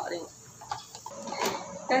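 Hard plastic storage baskets knocking against each other as they are handled, with one sharp click about one and a half seconds in; a woman's voice is heard briefly at the start and end.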